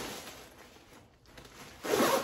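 Nylon clothing rustling as the wearer turns and moves an arm across the jacket and vest, fading after the first second and swelling louder just before the end.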